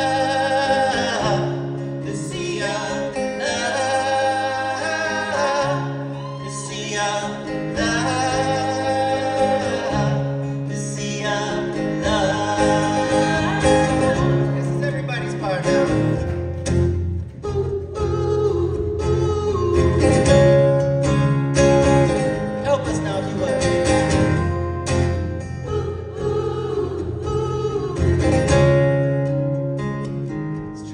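Acoustic guitar played with singing: a live folk song.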